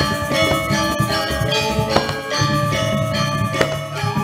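Balinese gong kebyar gamelan playing: bronze metallophones and gong kettles ring in dense, overlapping struck tones with sharp accents at irregular moments, over a steady low drone.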